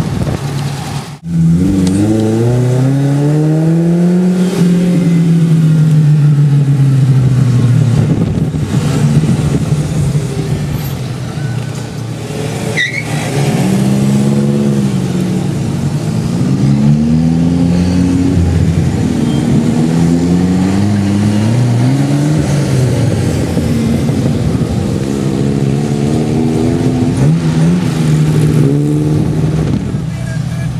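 Car engines revving and accelerating away, the pitch climbing and falling again and again as they pull through the gears. There is a short break in the sound about a second in.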